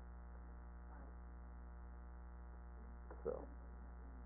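A steady low electrical mains hum, with one short spoken word near the end.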